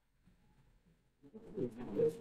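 Near silence for over a second, then a faint, low bird cooing comes in.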